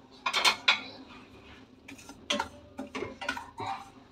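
Wooden spoon stirring dry spices in a stainless steel saucepan, scraping and knocking against the pan in several short strokes as the spices are lightly dry-roasted on a low flame.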